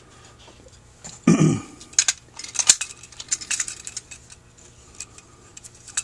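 Small metal parts and a wrench clinking and clicking against a Holley 2280 carburetor body while the brass needle-and-seat with its metal washer is fitted, in a quick run of clinks in the middle. A short vocal noise comes about a second in.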